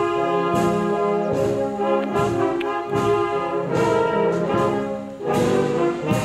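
A village brass band playing a slow processional piece, trombones and trumpets holding chords over a steady beat.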